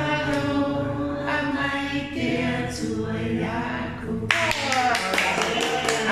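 A small group singing a song together unaccompanied, in long held notes. A little over four seconds in, the song ends and people break into clapping, with voices rising over the applause.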